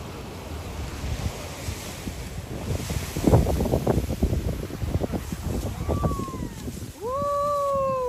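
Ocean surf with wind buffeting the microphone, swelling louder about three seconds in. Near the end a person's voice gives two high calls: a short one, then a long, loud one that falls in pitch as it ends.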